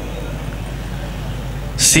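A pause in a man's amplified speech, filled with a steady low hum and background noise; his voice starts again near the end with a sharp 's' sound.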